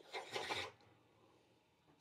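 A hand rubbing across the mouth and chin, one short rub lasting about half a second.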